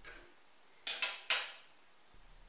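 Steel Allen key set down on a metal saw table: two sharp metallic clinks about half a second apart, each ringing briefly.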